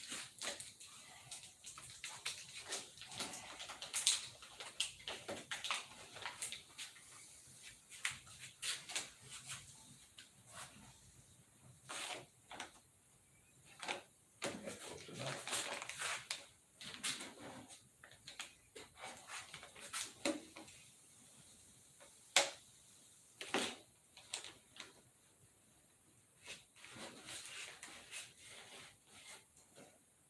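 Masking tape being handled, pressed and rubbed down onto a model airplane's wing tip, heard as irregular soft rustles, crinkles and small clicks.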